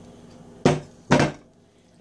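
Two sharp knocks on a stainless steel mixing bowl, about half a second apart, each ringing briefly, as tuna noodle casserole is tipped out of it into a baking dish.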